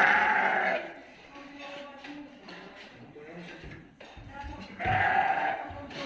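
Dorper sheep bleating twice: one long bleat at the start and another about five seconds in.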